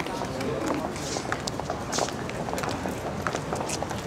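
Footsteps of several people walking on pavement, irregular shoe clicks, with scattered voices around them.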